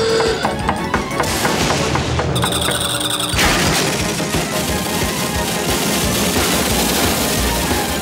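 Cartoon soundtrack music with a fast, dense run of crashing, splintering sound effects for wooden floorboards being ripped through; the clatter gets thicker about three and a half seconds in.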